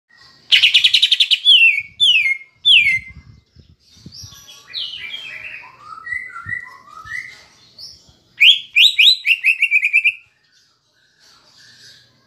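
Greater green leafbird (cucak ijo) singing a loud, varied song. It opens with a fast trill and three falling whistled notes, moves through warbled phrases, and about eight seconds in gives a quick run of rising notes.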